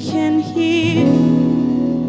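Worship music: a woman sings a note with vibrato over keyboard and electric guitar, then the band holds a sustained chord from about a second in.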